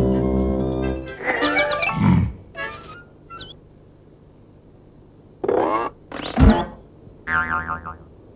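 Animated-film soundtrack: a held low musical chord for about a second, then a string of short cartoon sound effects with pitch that slides down and back up, separated by brief quiet gaps.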